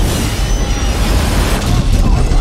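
Film sound effects of a jet airliner crash-landing on its belly and sliding through deep snow: a loud, continuous rumble.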